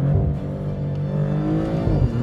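Twin-turbo V6 of a Maserati GranTurismo Trofeo pulling under acceleration, heard from inside the cabin, its pitch rising slowly and then dropping near the end, with background music over it.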